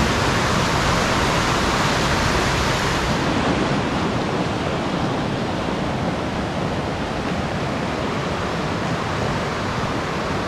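Rushing mountain stream, whitewater over rocks, a steady noise of water that grows a little fainter a few seconds in.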